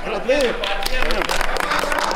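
Men's voices with several people clapping their hands, a quick run of sharp claps starting just under a second in.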